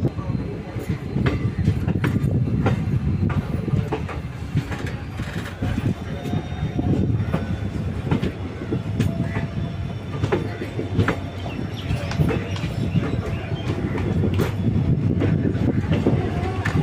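Passenger train running, its wheels clattering over rail joints with a steady rumble, heard from the open door of a coach. A faint thin squeal comes and goes in the middle.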